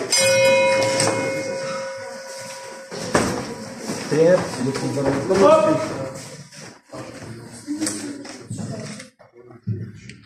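An electronic round-timer beep: one steady tone starting suddenly, held about three seconds and fading out. People's voices in the gym follow it.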